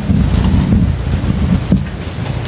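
Low, fluctuating rumble of noise on the microphone, with a sharp click near the end.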